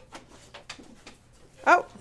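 Two pet dogs play-fighting, heard faintly as scattered light clicks and scuffles, with dog sounds, before a short spoken "Oh" near the end.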